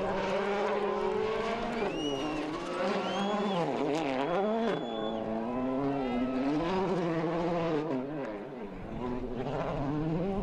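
Volkswagen Polo R WRC rally car's 1.6-litre turbocharged four-cylinder engine at speed. The pitch holds steady for about two seconds, then repeatedly drops and climbs again as the car slides through the corner and changes gear, easing off briefly near the end.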